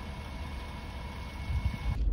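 Car engine idling, a steady low rumble heard from inside the car's cabin.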